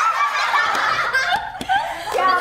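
Several women laughing and chattering excitedly over one another.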